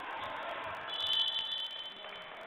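A basketball referee's whistle: one shrill blast about a second long, starting about a second in, blown to stop play.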